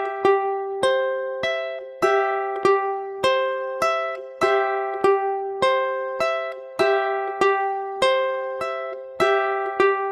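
Ukulele fingerpicked in a steady, even pattern of about one and a half notes a second: strings four and one pinched together, then strings three, two and one, repeated over one chord with the notes left to ring.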